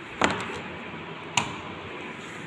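A miniature circuit breaker on an electrical panel being switched on: two sharp clicks about a second apart.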